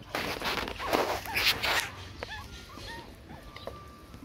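Water sloshing and splashing as a plastic bowl is rinsed and lifted out of a bucket, followed by several short, high puppy whimpers about two seconds in.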